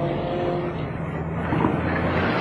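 Car engine running as a taxi pulls away, a steady low hum.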